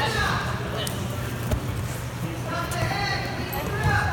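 Indistinct chatter of many voices across a wrestling room, over a steady low hum. A few short thumps of bodies and feet on the mats.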